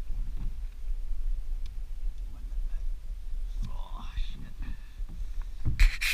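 Kayak paddle being handled and stroked, with light knocks and water sounds over a steady low rumble, and a cluster of louder sharp knocks right at the end as it is set down across the kayak. A brief murmured voice comes about four seconds in.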